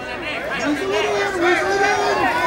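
Voices calling out over crowd chatter: cageside shouting during a clinch, with no clear words.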